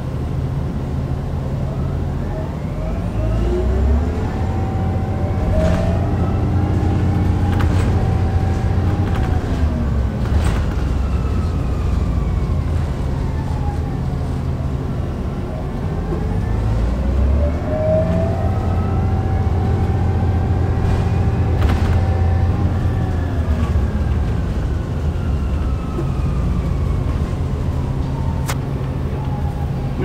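2009 Orion VII NG hybrid bus's BAE Systems HybriDrive electric drive whining. The whine rises in pitch as the bus speeds up, holds, then falls as it slows, twice over. Under it runs the steady low hum of the Cummins ISB diesel engine, with a few brief knocks.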